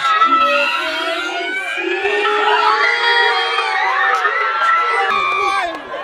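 Crowd of schoolchildren cheering and shouting, many high voices at once.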